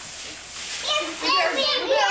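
High-pitched young child's voice chattering or babbling, starting about a second in, after a moment of steady hiss.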